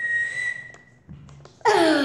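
A single steady, high whistled note held for about a second. Near the end it gives way to a loud burst of a child's voice.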